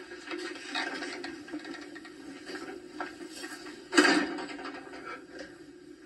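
Quiet film soundtrack played through a television's speakers and picked up across a small room: a steady low hum with faint scattered rustles, and one short, sharp noise about four seconds in, the loudest sound.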